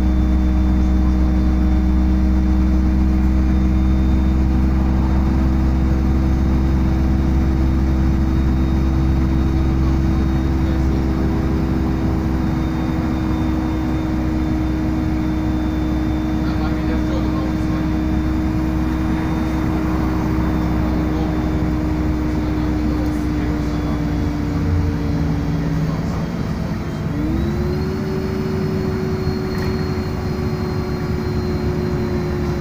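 City bus interior while driving: a steady engine and drivetrain drone with a whining tone that holds level, then dips and climbs to a higher pitch near the end as the bus changes speed.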